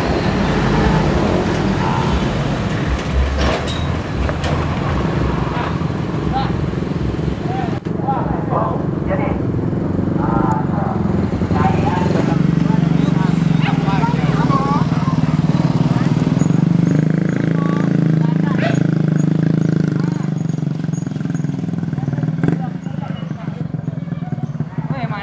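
A vehicle engine running steadily, a bit louder through the middle, with people talking in the background.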